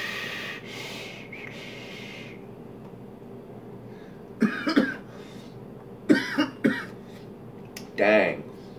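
A long drag on a squonk-mod vape, air hissing through the atomizer for about two seconds. Then a man coughs in two short fits, about four and a half and six seconds in: a dry hit, the wick running dry and needing to be squonked.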